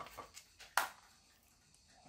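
Quiet handling of small 3D-printed plastic parts and a pair of pliers: a few faint light clicks, then one short sharp click or scrape just under a second in, then near quiet.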